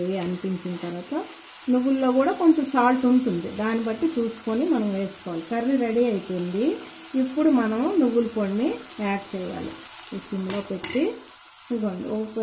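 A woman talking in short phrases, with brief pauses, over a faint sizzle from yardlong beans frying in a pot as they are stirred.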